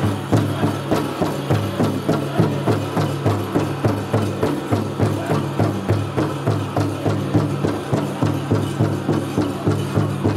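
Powwow drum group striking a big drum in unison, a steady fast beat of about three strokes a second, with singers' voices over it, playing for chicken dancers.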